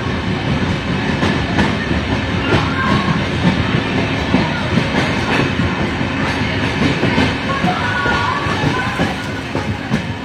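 Express passenger train running on the track, heard from the side of a coach inside a tunnel: a loud, steady rumble of wheels on rail with irregular clicks and knocks over the rail joints.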